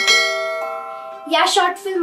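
A bell-like chime sound effect, struck once, its several tones ringing on together and fading over about a second and a half. A woman's voice speaks briefly near the end.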